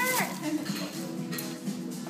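A person's voice ends an excited cheer in a falling cry just at the start. Steady background music follows, with a couple of faint clicks.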